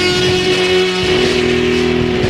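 Heavy psychedelic rock: loud, distorted electric guitar holding sustained notes over the band.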